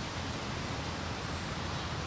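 Steady, even outdoor background hiss with no distinct sounds standing out.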